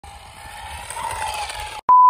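A small remote-control toy car running on the road, a whine over a hiss that grows steadily louder, then cut off near the end by a loud, steady test-tone beep.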